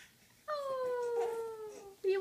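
A baby's long, falling whining cry that starts about half a second in and slides slowly down in pitch: fussing to be let out of the baby walker.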